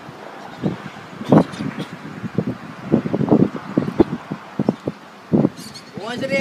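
Outdoor football-match ambience: scattered distant shouts from the players and short knocks, over a light steady hiss.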